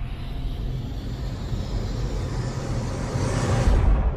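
Cinematic logo sound effect: a rumbling whoosh over a low steady drone, swelling to its loudest with a deep hit just before the end.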